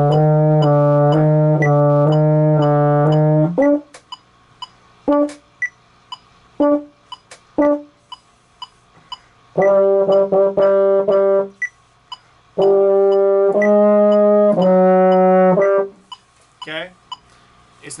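Baritone horn playing the closing bars of a beginner band piece. First come long, loud held notes, then a few short, separate notes spaced out with silences between them. After that a run of notes and final sustained notes sound, stopping about two seconds before the end.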